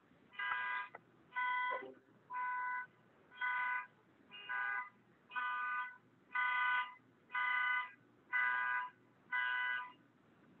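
An electronic beeper sounding ten evenly spaced beeps, about one a second, each about half a second long with several steady tones at once.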